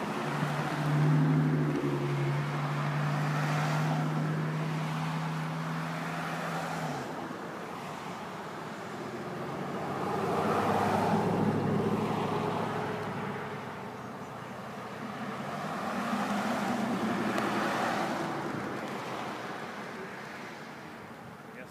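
Cars passing on a highway one after another, the tyre and engine noise swelling and fading with each pass. A steady low drone runs through the first seven seconds and then stops abruptly.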